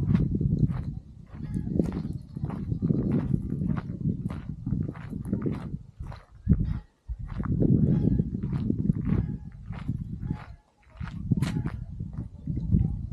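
Wind buffeting the microphone in gusts, with footsteps on a dirt path at about two steps a second.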